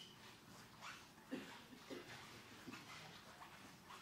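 Near silence: quiet room tone with a few faint, short sounds between about one and three seconds in.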